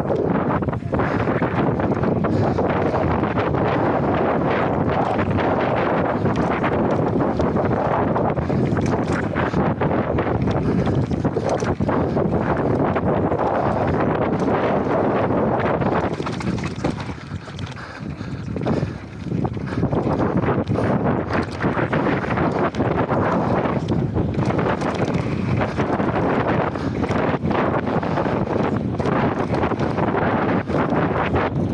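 Wind rushing over an action camera's microphone on a fast-moving mountain bike, with the clatter of tyres over dirt and loose stones and the bike rattling. The rush eases briefly a little past halfway, then comes back as loud as before.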